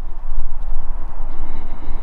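Wind buffeting the microphone: a steady, loud low rumble with a rushing hiss above it.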